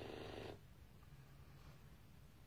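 Near silence: faint low room hum, after the tail of the previous words dies away in the first half-second.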